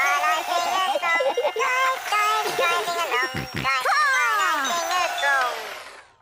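A children's cartoon song, a voice singing over music, that ends in several falling pitch slides dying away near the end.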